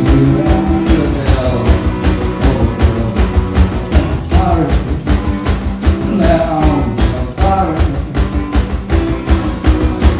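Live rock music: acoustic guitar played over a steady, fast drum beat, with a voice singing over it.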